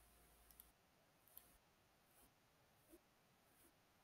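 Near silence with a few faint computer mouse clicks, scattered and short; the app's piano notes are not heard.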